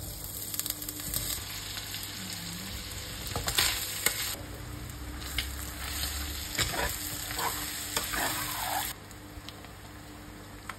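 Chopped onions and ham sizzling in hot oil in a stainless steel frying pan while a spatula stirs them, with scattered scrapes and knocks of the spatula on the pan. The sizzle cuts off suddenly near the end.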